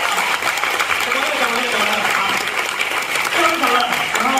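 Theatre audience applauding, a dense continuous clapping, with voices heard over it from about a second in.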